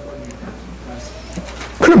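Short pause in a man's speech: faint room tone with a low steady hum and a faint held tone in the first second, then his voice comes back near the end.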